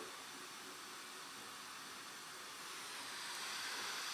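Faint steady hiss of room tone, no distinct event, growing slightly louder near the end.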